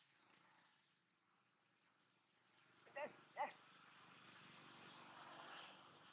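Two short, high-pitched animal calls about three seconds in, less than half a second apart, each rising then falling in pitch, in near silence. A sharp click sounds right at the start.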